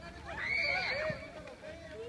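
A loud, high-pitched shout lasting under a second, rising and falling in pitch, with other voices calling around it.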